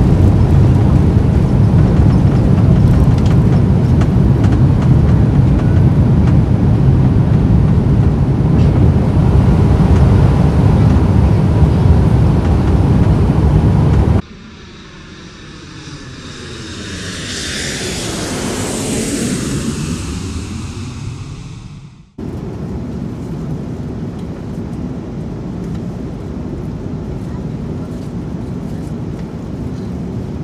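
Loud, steady low rumble of an airliner's jet engines heard inside the cabin on the ground. About 14 seconds in it cuts to a whooshing effect that swells and fades with sweeping pitch, then stops abruptly. A quieter, steady cabin drone of the airliner at cruise follows.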